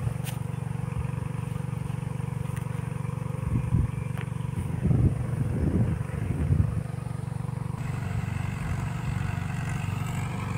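Farm tractor engine running steadily at a low drone, with a few louder surges in the middle.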